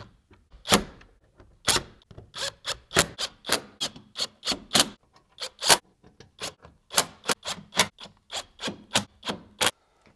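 Cordless driver gently tightening the plastic screws of an engine splash shield, giving a string of sharp, irregular clicks about two to three a second, with a brief pause about six seconds in.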